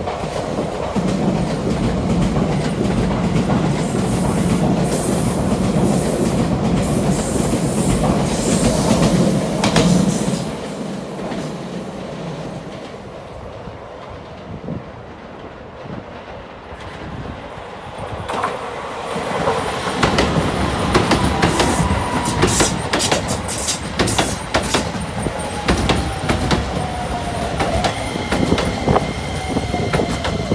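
Keisei AE-series Skyliner passing through the station at speed, a loud rolling rumble that fades about ten seconds in. From about eighteen seconds a Keisei 3000-series commuter train comes in, its wheels clicking over rail joints while its motor inverter's whine falls steadily in pitch as it brakes.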